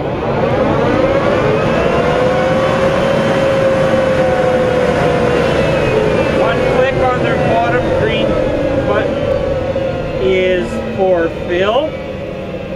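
The hydraulically driven fans of a Bourgault 7000 series air seeder run with a loud whine and overtones. From about three seconds in the whine slowly drops in pitch as the hydraulic oil is diverted to the conveyor and the fans wind down.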